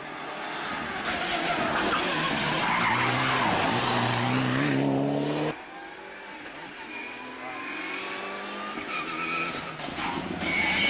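A rally car passing close at speed, its engine at high revs over loud tyre and road noise, cutting off suddenly about five and a half seconds in. Then a more distant rally car's engine is heard coming closer, rising in pitch.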